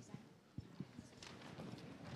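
A quiet hall with a few soft, short knocks and taps from people moving about, over faint room noise.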